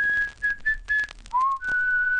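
A whistled melody: a few short notes, then a note sliding up into a long held note near the end.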